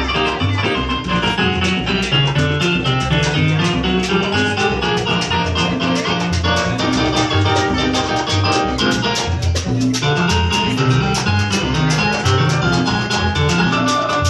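Live salsa band playing, with a bass line moving step by step under steady, dense percussion and sustained melodic parts.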